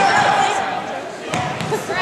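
Gymnasium din during a basketball game: spectators' and players' voices echoing in the hall, and a basketball bouncing on the hardwood floor with a few thuds about one and a half seconds in.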